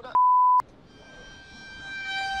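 A steady single-pitch censor bleep about half a second long, blanking out a swear word. About a second in, a held musical note fades in and swells.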